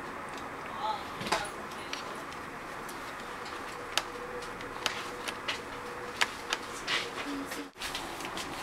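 Light scattered clicks and taps as a 2.5-inch laptop hard drive is handled and set down into the drive bay of a MacBook Pro's aluminium case, over a steady low background hiss.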